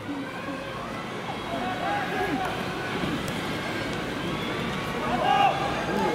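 Voices over the steady background noise of a football stadium, with a louder call about five seconds in.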